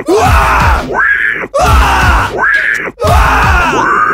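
Male vocalists screaming and yelling wordlessly in a heavy song's breakdown. Loud strained cries with sliding pitch come in phrases about a second and a half long, each cut off by a brief gap.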